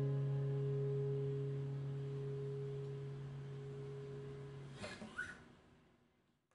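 The last strummed chord of a K.Yairi YW-1000 acoustic guitar rings out and slowly fades. About five seconds in, the hand damps the strings and the ringing cuts off, with a short squeak and scrape of fingers on the strings.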